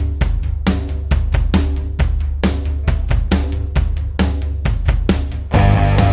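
Stoner rock drum groove: kick, snare and cymbals hit in a steady beat over a deep bass. Near the end the full band crashes in with distorted guitars and the sound gets thicker and louder.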